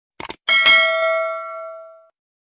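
Two quick clicks, then a notification-bell 'ding' sound effect that rings with several overtones and fades out over about a second and a half.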